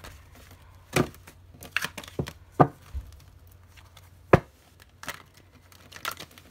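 A tarot deck being shuffled by hand: irregular sharp snaps and slaps of the cards, about five loud ones spread over the few seconds, with quieter rustles between.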